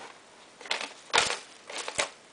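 Thin plastic bag crinkling in three short rustles as a Maltese dog noses and digs into it after a treat; the loudest rustle comes about a second in.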